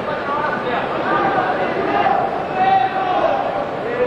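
Arena crowd noise: many voices shouting and calling out over a steady background din, with a few louder held shouts near the middle.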